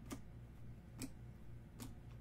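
Trading cards being laid down on a tabletop one after another: three sharp taps about a second apart, over a faint steady low hum.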